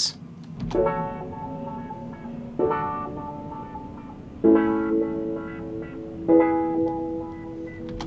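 Piano chords played back through Studio One's Autofilter in its 16-step mode. A custom drawn step pattern moves a low-pass filter between open and closed, so the tone brightens and dulls from step to step. Four sustained chords sound, a new one about every two seconds.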